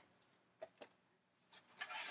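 Near silence: two faint clicks a little past halfway, then brief rustling and scraping handling noise near the end as things are moved about.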